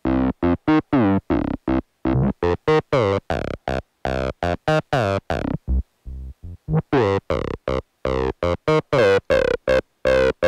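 Acid-style bass synth line from the Sugar Bytes Egoist iPad app, playing a step-sequenced pattern of short staccato notes, many with a falling resonant filter sweep. There is a briefly softer stretch of notes about six seconds in.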